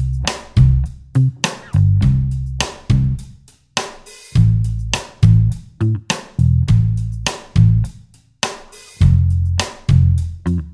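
Pop backing track in C major: a simple bass guitar and drum kit groove over a C–Am–F–G chord progression.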